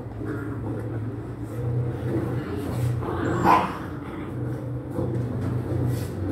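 Dalmatian puppies making small whimpering, grumbling dog sounds as they crowd around a food dish, with one short, louder cry about halfway through. A steady low hum runs underneath.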